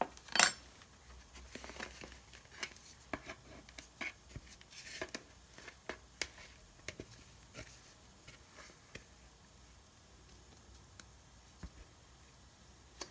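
Kitchen handling sounds over a wooden cutting board: a sharp knock about half a second in, then a scatter of small clicks, taps and rustles as a mixing bowl is brought over and the risen bread dough is turned out. It goes quieter for the last few seconds.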